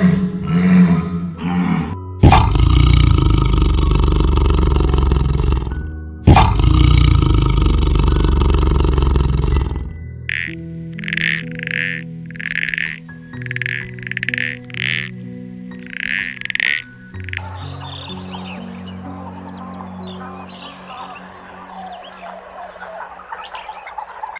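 Walruses bellowing: a few short grunts, then two long, loud, deep bellows of about four seconds each. A toad follows with about nine short calls, a little under one a second, and then a quieter rustling noise. Soft background music plays throughout.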